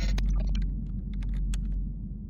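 Tail of a glitch-style logo sting: a deep rumble fading away, with scattered digital clicks and crackles over the first second and a half.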